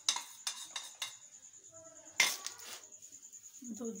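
Metal kitchenware clinking: several sharp knocks of utensils against aluminium pots in the first second, and a louder clank about two seconds in.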